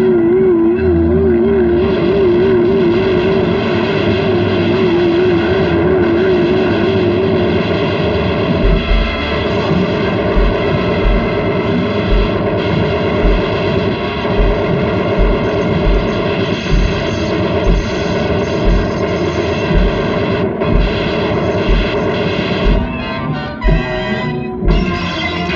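Orchestral cartoon score with a wavering high tone through the first seven seconds or so, then heavy low thuds about once a second: a giant robot's footsteps.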